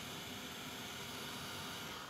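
Embossing heat gun running, blowing hot air over embossing powder on cardstock: a steady hiss.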